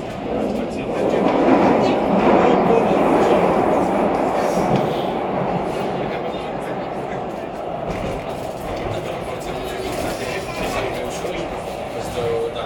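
Metro train running through a tunnel, heard from inside the carriage: a loud rumble that swells about a second in and then slowly eases off.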